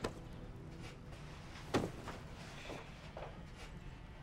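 Quiet room sound with soft footsteps and small knocks, and one dull thump about two seconds in.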